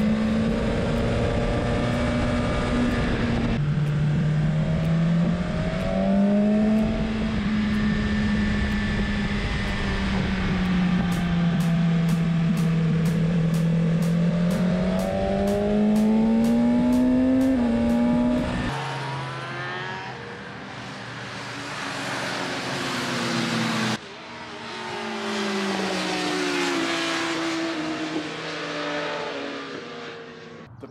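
BMW S1000RR's inline-four engine heard from onboard at track speed, its pitch rising and falling through the corners, with a sudden drop about four seconds in. About two-thirds of the way through, the sound changes to motorcycles heard passing on the circuit, their engine notes rising and falling.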